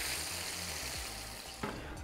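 Hot oil sizzling as battered chicken pieces are deep-fried and lifted out with a wire spider skimmer, the sizzle slowly dying down.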